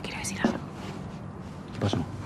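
Only speech: soft, half-whispered talk, then a short spoken question near the end.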